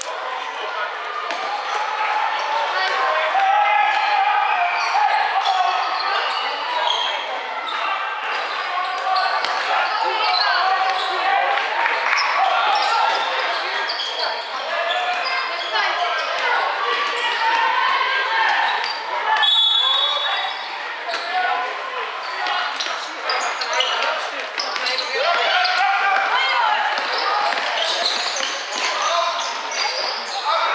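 Many overlapping voices of players and spectators in a large echoing sports hall during a youth basketball game, with basketballs bouncing on the hardwood-style court floor. A brief high shrill tone sounds about two-thirds of the way through.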